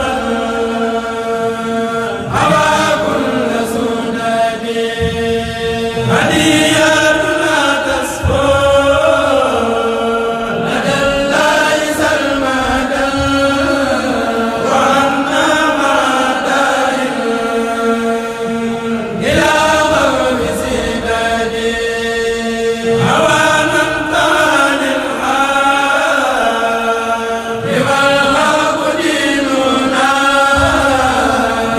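A Senegalese Mouride kourel, a male choir, chanting Arabic qasidas (xassaids) in unison, in phrases that break and start anew every few seconds. In places some voices hold one long steady note beneath the melody.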